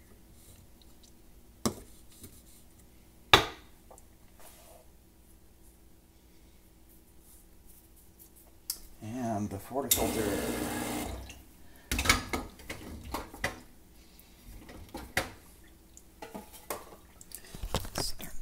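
Metal espresso tools being handled: sharp clinks and knocks as a leveling tamper and portafilter are lifted and set down, the sharpest knock about three seconds in. A rushing hiss lasts about a second around ten seconds in, followed by more clatter.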